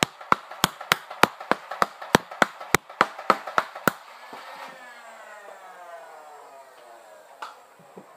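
Nerf dart blaster worked rapidly, a run of sharp clacks about three a second for some four seconds. Then a falling whine fades away over the next few seconds.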